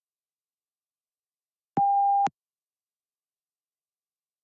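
A single electronic beep, one steady mid-pitched tone about half a second long, sounding a little under two seconds in. It is the PTE Read Aloud test's cue that recording of the spoken answer has started.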